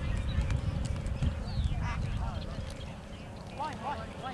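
Open-air soccer match sound: a low rumble of wind on the microphone, easing off about halfway through, with a few distant shouts from players and sideline and scattered faint taps.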